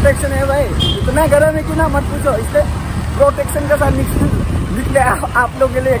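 A man talking almost throughout, over a steady low rumble of road traffic.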